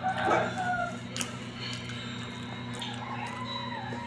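Animal calls with a rising and falling pitch, one in the first second and a longer arching one about three seconds in, over a steady low hum.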